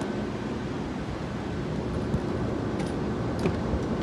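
Steady rushing hum of a running HVAC air handler's blower, with a few light clicks in the second half.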